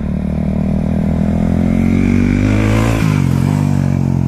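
A 2016 KTM 690 Enduro R's single-cylinder engine, heard up close, pulling away with its pitch climbing steadily for about two and a half seconds, then dropping sharply and settling to a steady run.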